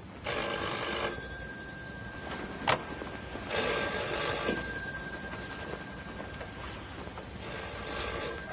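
A bedside desk telephone's bell ringing in three bursts of about a second each, a few seconds apart, for an incoming long-distance call. A sharp click falls between the first and second rings.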